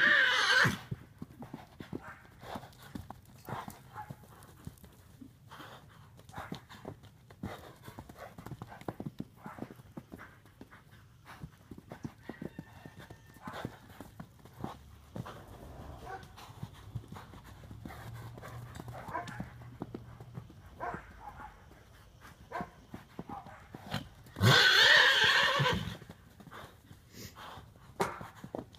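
Appendix Quarter Horse running loose on an arena's dirt, with irregular hoofbeats throughout. A loud whinny comes near the end, the horse calling for another horse.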